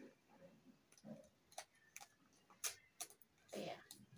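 Faint handling of small pieces of glossy paper being folded and creased by hand: a few sharp little clicks and crackles, spread out, with a short spoken "yeah" near the end.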